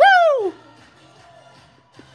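A loud, high 'Woo!' whoop that slides down in pitch over about half a second. It is followed by faint upbeat music with a steady beat from an old aerobics-competition broadcast playing on a laptop.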